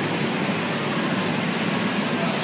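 Inflatable obstacle course's electric blowers running, a steady rushing noise with a low hum underneath.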